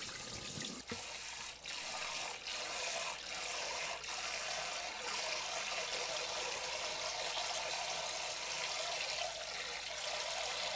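Kitchen tap running steadily into the sink and into a stainless steel bowl of rice being rinsed by hand, with a few brief splashes in the first four seconds.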